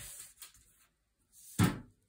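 A single sharp thump about one and a half seconds in, from a hand and the sheet of paper knocking against the tabletop while the paper is moved.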